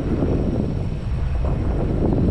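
Wind buffeting the microphone as it moves through the air: a loud, rough, fluttering rumble with no clear tone.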